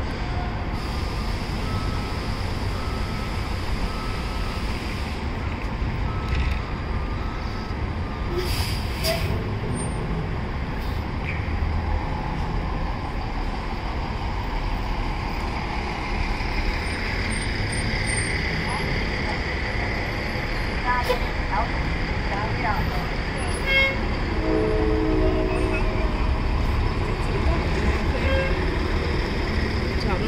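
A 2015 MCI D4500CT coach's compressed-natural-gas engine runs as the bus pulls away from the curb and draws nearer, growing louder toward the end, over city traffic noise. A brief horn toot sounds about 25 seconds in.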